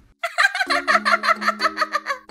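A rapid, even warbling cartoon sound effect of about ten pulses a second, over held background music notes.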